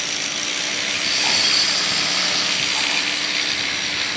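Construction hoist's electric rack-and-pinion drive running steadily, with a faint motor hum, as the car travels along the toothed mast while it is being greased.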